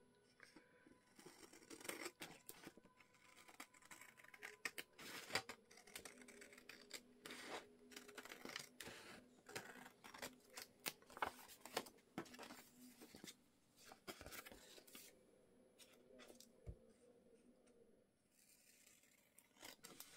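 Scissors snipping through paper, a quiet, irregular run of short cuts as an envelope covered with a book page is trimmed, with paper rustling between cuts. The cuts thin out near the end.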